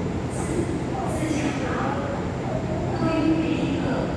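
Electric commuter train standing at a platform with a steady low hum, while another train approaches the station. People's voices are heard over it.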